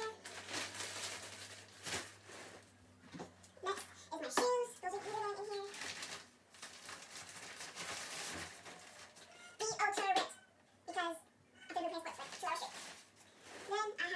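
A bag being handled and rummaged through while it is packed, its fabric rustling, with short stretches of a girl's voice between the rustles.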